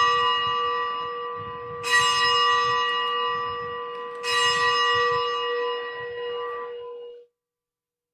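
A bell rung at the elevation of the chalice after the consecration at Mass. It is already ringing from a stroke just before, is struck again about two and four seconds in, and each stroke rings on in a long steady tone with bright overtones, dying away about seven seconds in.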